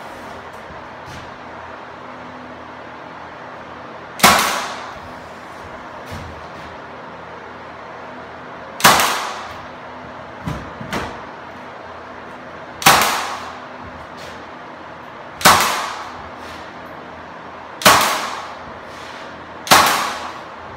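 Senco cordless 18-gauge trim nailer firing six times, a few seconds apart, driving brads into wooden window trim; each shot is a sharp bang that dies away within about half a second. Two small knocks come in the middle, between the second and third shots.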